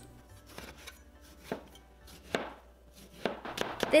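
Chinese cleaver chopping through tomato onto a plastic cutting board: a few separate knocks, the loudest about one and a half and two and a half seconds in.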